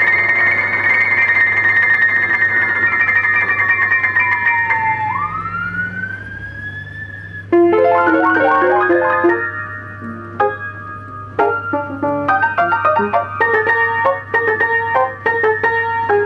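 Ampico reproducing grand piano playing a music roll by itself: sustained high notes at first, then a sudden loud chord about seven and a half seconds in, followed by quick runs and chords.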